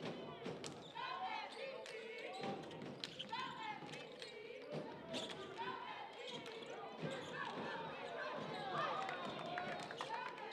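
A basketball being dribbled on a hardwood gym floor, with many short bounces and sneakers squeaking on the court as the players cut and move.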